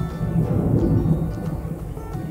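Hilsa roe cooking in an oily masala gravy in a pot, a low rumbling simmer, while a wooden spatula stirs it. Soft music plays underneath.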